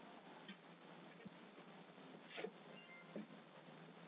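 Near silence: a faint steady hiss, with a brief faint sound about two and a half seconds in and a smaller one about half a second later.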